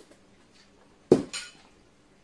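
A sharp clink of glass about a second in, then a lighter clink just after: a glass soup bowl with its spoon being set down on a table.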